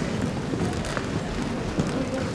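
Steady crowd noise from a room full of people, a low even background with a few faint clicks.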